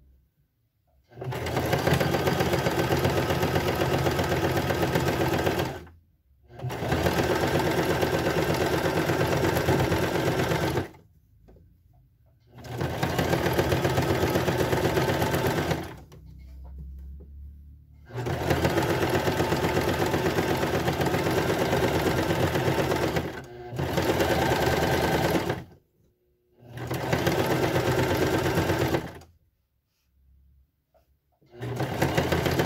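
Domestic electric sewing machine sewing a zigzag stitch around the armhole of a stretch top. It runs in six bursts of a few seconds each and stops briefly between them.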